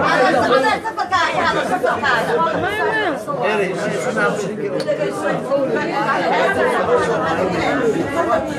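Several voices talking at once: overlapping chatter with no single clear speaker.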